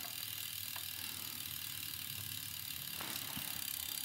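Road bike drivetrain turning in top gear: the chain runs over the big chainring with a steady, quiet running noise and a few faint ticks. Meanwhile the front derailleur's high limit screw is being backed out to stop the chain rubbing on the derailleur's cage plate.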